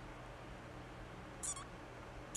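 A single brief high squeak about one and a half seconds in, over a faint steady low hum.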